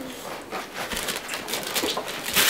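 Gift wrapping paper being handled and pulled at, crinkling and rustling in quick irregular crackles.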